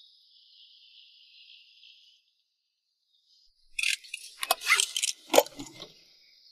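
A faint high hiss, then, a little under four seconds in, a quick run of sharp clicks and metallic rattling lasting about two seconds, loudest near the end.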